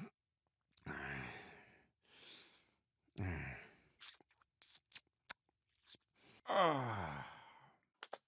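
A cartoon dad's voice making idle "dad noises" without words. There is a low groan, a breathy exhale and another short grunt, then a run of quick mouth clicks and lip smacks, and a long sigh-groan falling in pitch near the end.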